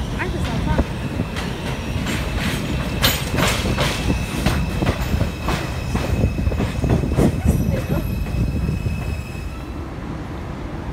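A New York City subway 2 train rolls into the station past the microphone. Its wheels clack over the rail joints in a fast, uneven run of knocks, over a low rumble and a thin steady wheel squeal. The knocking dies away and the sound drops shortly before the end.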